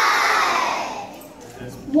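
A crowd of young children calling out together in one long falling exclamation, their voices dying away about a second in.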